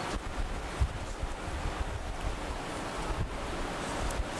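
Steady hiss of room noise picked up by the table microphone, with a few faint low thumps.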